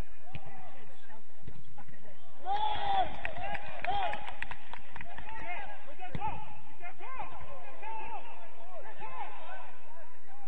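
Footballers shouting and calling to each other across the pitch, loudest and busiest from about two and a half seconds in, with a few sharp knocks of the ball being kicked among the shouts.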